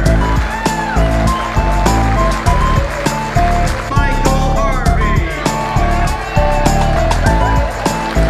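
Upbeat background music with a steady, driving beat, heavy bass and a melody of short stepping notes.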